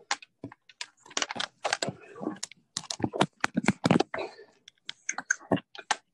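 Rapid, irregular clicks and rubbing picked up close to a participant's microphone on a video call, the handling noise of someone working the keys or the earphones at his computer.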